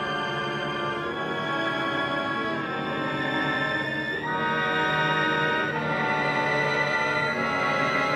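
Live opera orchestra playing sustained chords with strings to the fore, moving to a new chord every second or two.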